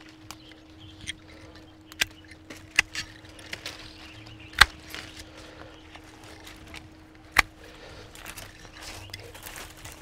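Hand pruning shears snipping through grapevine canes: a handful of sharp, separate clicks, the loudest about halfway through and another near the end, over a faint steady hum.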